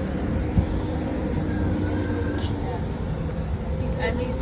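Steady low rumble of idling school buses, with faint distant voices over it.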